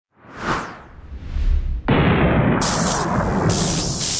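Intro-animation sound effects: a whoosh about half a second in, a low rumble swelling up, then a sudden loud boom-like crash just before the two-second mark that runs on as a dense noisy rumble, with bursts of high static hiss cutting in and out near the end.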